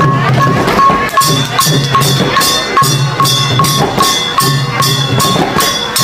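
Chhay-yam drum music: the long waist-slung drums beat a quick, steady rhythm, with bright, sharp strokes on top of each beat.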